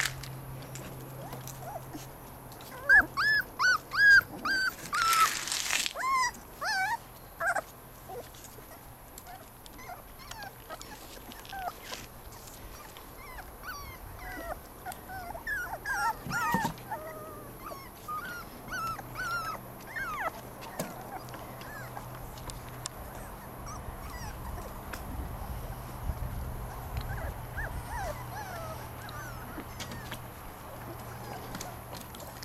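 Young puppies whimpering and yipping in short, high-pitched, rising-and-falling cries: a quick run of them a few seconds in, more in the middle, and a few faint ones near the end.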